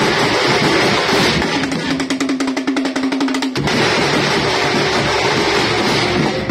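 Loud live band music: a melody over a Tamil drum troupe's frame drums and large bass drums. A fast run of drum strokes under a held note sits in the middle.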